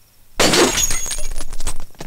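A sudden crash of something breaking and shattering, about half a second in, followed by scattered clinks of falling pieces: a fight-scene breaking sound effect.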